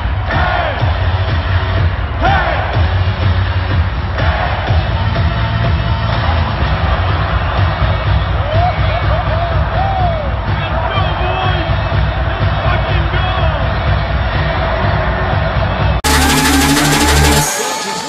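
Arena PA music with a heavy, steady bass beat playing over a cheering hockey crowd, with scattered shouts and whoops, heard from the stands. About two seconds before the end it cuts abruptly to a different music track.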